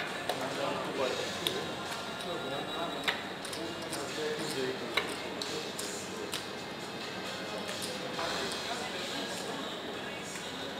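Casino chips clicking as they are set down and stacked on the roulette layout: a few sharp, separate clicks, the loudest about three and five seconds in, over a steady hubbub of voices.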